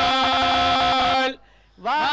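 Male priests chanting hymns in unison, holding long steady notes. The chant breaks off for a breath about a second and a half in, then resumes near the end.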